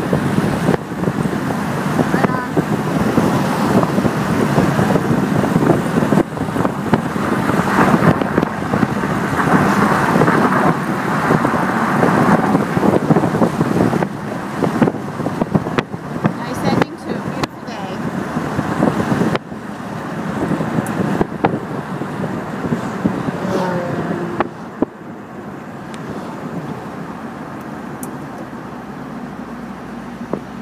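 Road and wind noise from a moving car, a dense rushing noise that eases off noticeably about three-quarters of the way through.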